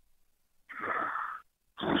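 A short breathy exhale heard over a phone line, lasting under a second, just before the other person starts to answer.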